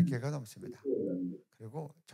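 A man's speaking voice: a phrase trails off at the start, then a short low murmured voice sound about a second in and a brief spoken fragment near the end.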